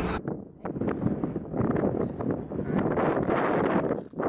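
Strong wind buffeting the camera microphone in uneven gusts, dipping briefly about half a second in and then rising again.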